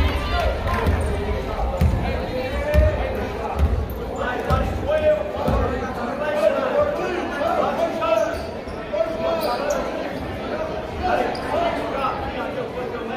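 Basketball dribbled on a hardwood gym floor, a low echoing thump about once a second in the first half, over the chatter of spectators' voices in the hall.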